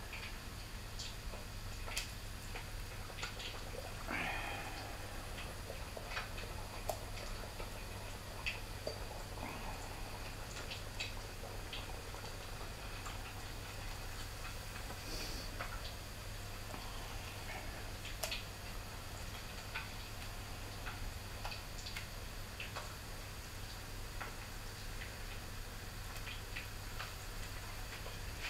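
Hot oil crackling and popping in a saucepan as battered whiting fillets deep-fry, in sparse irregular clicks over a steady low hum, with a brief louder burst about four seconds in.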